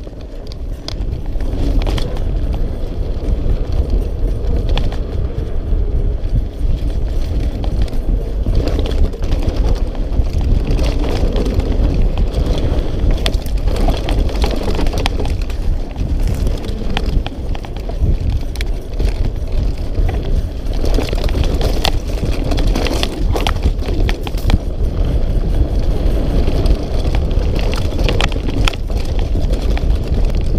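Mountain bike ridden fast down a dirt trail: a continuous rush of wind on the microphone and tyres rolling over dirt, with frequent sharp clicks and rattles from the bike and stones over the bumps.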